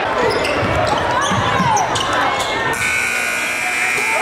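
Live basketball game sound in a gym: a ball being dribbled on the hardwood amid shouting voices. Near the end a steady, high buzzer tone starts abruptly and holds.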